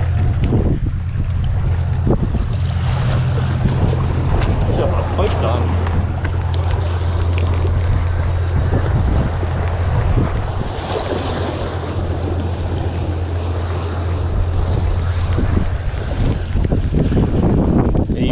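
Wind buffeting the microphone with a steady low rumble, over waves washing against the jetty's rocks.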